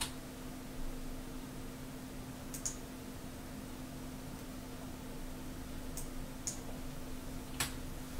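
Sparse sharp clicks from a computer keyboard and mouse, five or so spread over the seconds, over a steady low electrical hum.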